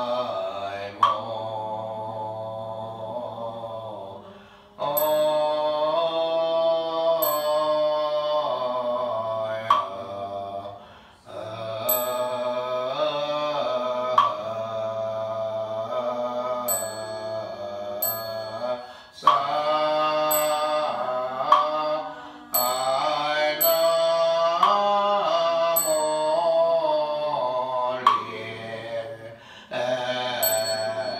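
A small group chanting a Buddhist sutra in unison, led by a monk, in long sustained melodic phrases with a couple of short breaks. Sharp knocks of a struck ritual instrument and short high bell tings mark the chant at intervals.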